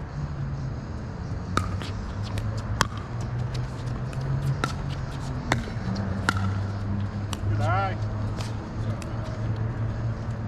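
Pickleball rally: sharp pops of paddles striking the plastic ball, several hits a second or so apart, with fainter pops from neighbouring courts, over a steady low hum. A brief squeak comes near the end.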